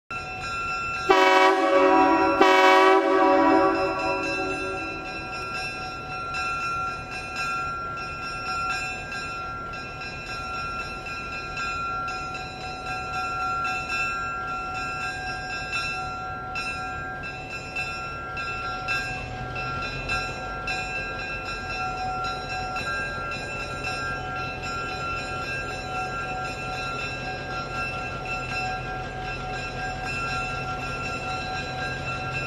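Diesel locomotive horn sounding two blasts of about a second each near the start. The locomotive keeps running after them, with a low engine rumble that grows louder about two-thirds of the way through.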